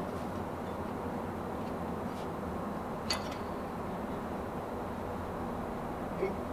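Steady low background hum of the garage, with one light click about three seconds in and a couple of fainter ones, as of a metal part or tool being handled.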